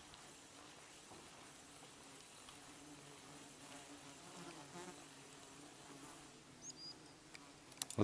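Faint buzzing of a flying insect, its low hum wavering slightly in pitch.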